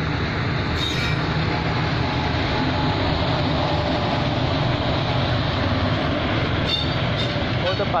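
Indian Railways WAP-4 AC electric locomotive and the head of its express train passing close by at speed: a loud, steady rumble of wheels on rail. Voices come in right at the end.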